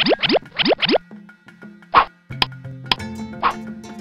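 Cartoon sound effects over light background music: four quick upward pitch sweeps in the first second, then a short, loud pop about two seconds in, followed by a few sharp clicks.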